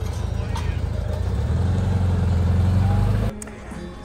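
Volkswagen Beetle's air-cooled flat-four engine running close by, its low note growing louder over about two seconds, then cut off suddenly near the end.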